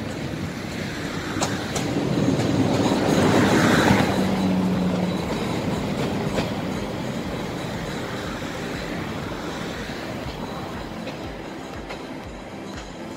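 Passenger train rolling past close by. Its rumble swells to a peak about four seconds in and then fades, with a few sharp wheel clacks over rail joints and a brief steady hum near the peak.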